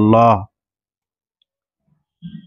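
A voice repeating 'Allah', which stops about half a second in; the rest is dead silence.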